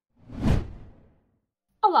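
A single whoosh transition sound effect that swells and fades within about a second.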